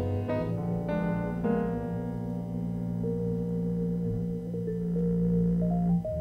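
Jazz quartet music led by vibraphone played with soft mallets, with piano and a low bass. A few struck notes open it, then a chord rings on for about four seconds before new notes begin.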